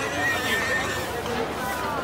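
A horse whinnying over the chatter of a street crowd, with one long, wavering high call in the first second.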